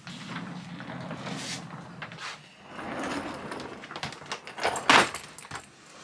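Clothes and bags rustling as someone rummages through a closet, then a hard-shell suitcase pulled out and set down on a wooden floor, with a sharp knock about five seconds in.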